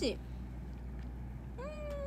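A cat meows once, a single drawn-out call that rises briefly and then falls in pitch, starting about one and a half seconds in. It follows the last syllable of a woman's speech.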